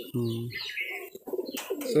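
Domestic pigeons cooing: several low coos in quick succession.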